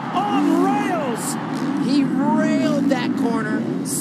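Two 450-class four-stroke motocross bikes racing together, their engines revving up and down in repeated sweeps over the stadium crowd noise.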